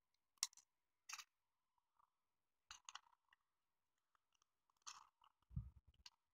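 Faint, scattered clicks and scrapes of small plastic parts as an N gauge model train car body is pried apart with a plastic tool, about five clicks in all, with a soft low thump near the end.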